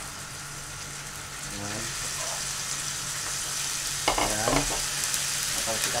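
Raw chicken pieces dropped into hot oil and browned onions in a wok over a gas burner, sizzling as they fry. The sizzle grows louder from about a second and a half in as more chicken goes into the pan.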